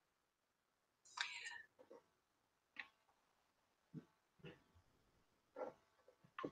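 Near silence on the call line, broken by a few faint, short vocal sounds: a whispery breath about a second in, then several brief murmurs.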